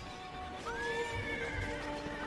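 A horse neighing: one long call starting about two-thirds of a second in that rises sharply, then holds and slowly falls, over background music with held notes.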